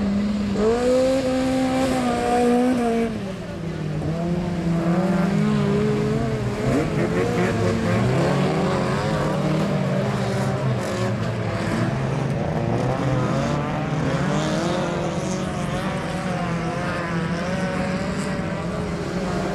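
Several autocross race cars' engines running hard around a dirt track, overlapping, their pitch rising and falling as the cars accelerate and lift off.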